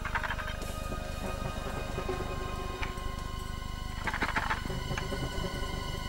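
Background music of a TV drama score: steady held tones, with a short burst of higher sound about four seconds in.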